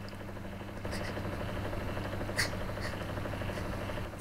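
A steady low hum, with a faint tick about two and a half seconds in.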